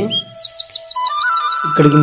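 A bird chirping: a quick, even run of about eight short down-slurred high notes, over a steady held tone of background music. Speech starts again near the end.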